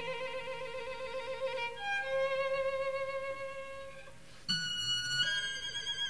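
Contemporary classical music: solo violin with a chamber ensemble playing held notes with vibrato. The sound grows softer toward the middle, then about four and a half seconds in a sudden louder entry of high sustained notes.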